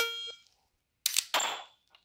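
Electronic start beep from a dry-fire laser training app, a short tone, followed about a second later by a single sharp noisy shot sound as the laser-fitted AR-15 dry-fire setup fires and the shot is timed.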